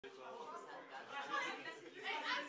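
Faint, indistinct chatter of several people talking.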